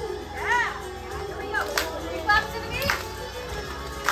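Group of young children making brief vocal sounds, with one short high call about half a second in, and a few sharp hand claps, over quiet song music.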